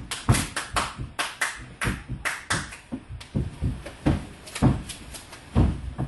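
Dancers' percussive footwork and hand contact on a stage floor without music: quick, irregular sharp taps and claps, several a second, mixed with heavier stamps.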